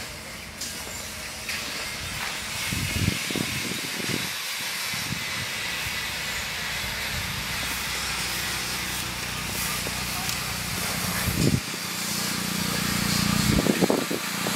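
Steady hissing outdoor background noise, with a few soft low thumps.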